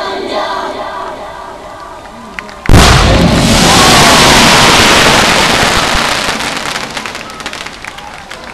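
Show music fading out, then about three seconds in a sudden loud burst as pyrotechnics fire. A sustained hiss of spraying sparks follows, with scattered crackles, slowly dying away.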